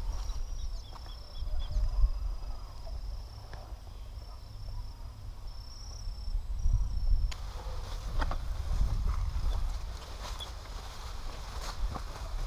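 Lettuce heads being picked and packed into a plastic harvest crate, with brief rustles and light knocks in the second half. Over a constant low rumble, a steady high thin whine runs for about the first seven seconds and then cuts off suddenly.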